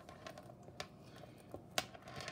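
Metal alligator clips and their wires being handled and clipped onto a charger connector: faint rattles and small clicks, with one click a little under a second in and the sharpest about two seconds in.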